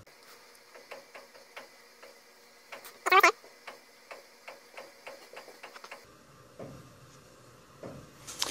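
Faint ticking, about three ticks a second, in sped-up audio; it stops about six seconds in. A brief sped-up spoken 'okay' comes about three seconds in.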